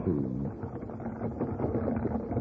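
Radio-drama sound effect of a horse-drawn wagon drawing near: hooves and rattling wheels, heard as an even, moderate noise.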